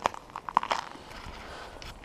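Footsteps crunching on packed snow: a few sharp crunches in the first second, then one more near the end.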